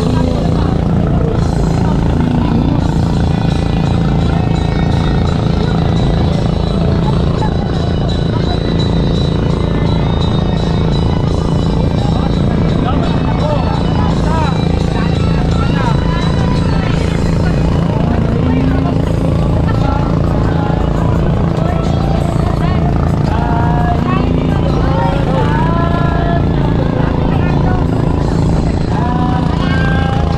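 A boat engine running steadily as it moves the bamboo raft through the water, with people's voices over it.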